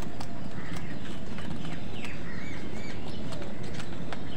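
House crows pecking at food in a plastic bowl, a scatter of sharp beak clicks over a steady low background rumble. A few short, high bird calls come about two seconds in.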